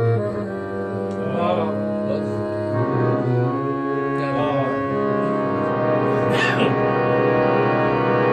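Harmonium playing sustained chords and melody, its reeds sounding steady held tones, with a man's voice coming in over it in short phrases.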